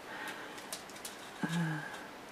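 Faint rustle of paper strips being handled and lined up, with one brief, steady, low hum about one and a half seconds in.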